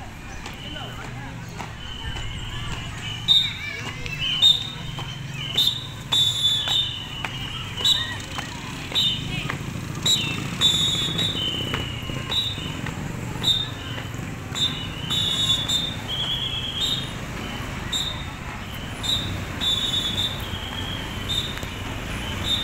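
Short, sharp whistle blasts, roughly one a second, over a hum of voices and street noise.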